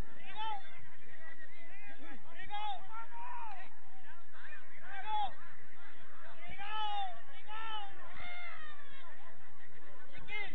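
Several people's voices shouting and calling out in short, rising-and-falling calls, over a background of crowd chatter.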